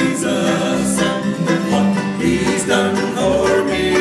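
Bluegrass band playing: banjos, acoustic guitars, mandolin and upright bass, the bass plucking a steady beat about twice a second.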